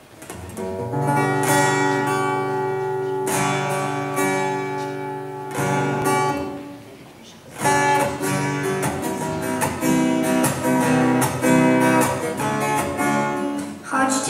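Acoustic guitar playing a song's introduction: three ringing chords struck about two seconds apart, a brief fade a little past halfway, then quicker rhythmic strumming.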